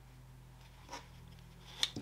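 Faint rustle of webbing strap sliding through a plastic side release buckle as it is pulled through, over a steady low hum, with a short click near the end.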